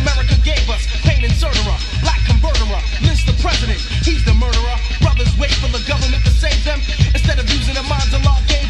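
Hip-hop track playing from a vinyl record: rapped vocals over a steady beat with heavy bass.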